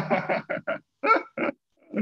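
A man laughing in a few short bursts, heard through a video call.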